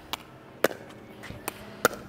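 A pickleball rally: sharp pops of paddles striking the hard plastic ball and of the ball bouncing on the court, four in about two seconds.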